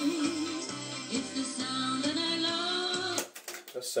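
A music cassette with singing playing on a Matsui compact hi-fi's tape deck, through its speakers, sounding a bit funny. The music cuts off suddenly about three seconds in, followed by a few sharp clicks from the deck.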